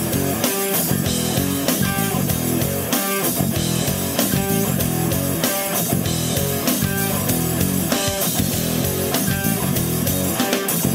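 Rock karaoke backing track playing its instrumental intro, led by electric guitar over bass, before any vocals come in.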